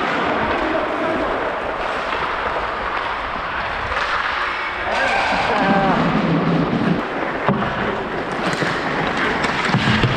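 Ice hockey game heard from a referee's helmet camera: a steady scraping rush of skating on the ice, with players shouting about five to seven seconds in and again near the end.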